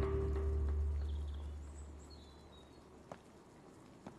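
Background score holding a chord over bass, fading out over about the first two seconds. It leaves faint quiet ambience with a few faint high chirps and a single light tap near the end.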